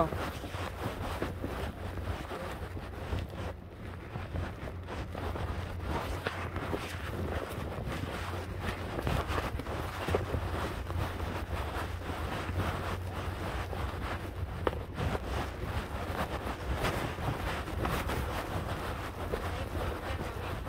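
Wind buffeting the phone's microphone: a steady low rumble with faint scattered ticks and no clear rhythm.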